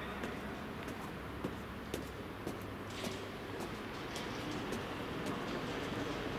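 Steady low background rumble with a few faint, sharp clicks scattered through it.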